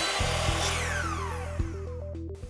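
Intro-sting sound effect of a power saw blade spinning: a whirring rush with several falling whines that fades, over a steady low hum, with a short run of stepping synth notes coming in during the second half.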